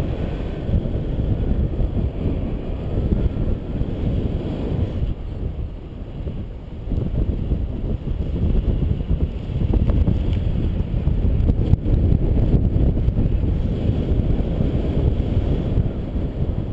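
Wind buffeting a camera microphone in flight under a tandem paraglider: a steady low rumble that eases for a couple of seconds around five to seven seconds in, then grows again.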